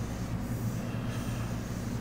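A steady low hum with a faint hiss over it, unchanging throughout: background equipment or room noise picked up by the recording.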